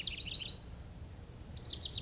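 A songbird singing a rapid series of high notes: one phrase trails off about half a second in, and a new phrase starts near the end.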